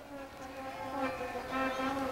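A steady buzzing drone, several held pitches sounding together, with a short break in the lowest note near the end.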